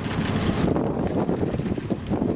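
Wind buffeting the microphone outdoors, a dense rumbling noise with no clear speech.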